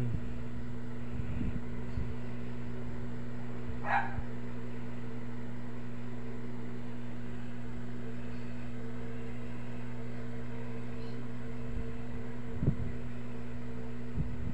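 A steady low mechanical hum, with a short rising squeal about four seconds in and a few soft knocks.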